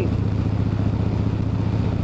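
Harley-Davidson Road King's V-twin engine running steadily at cruising speed, with wind and road noise, heard from the saddle.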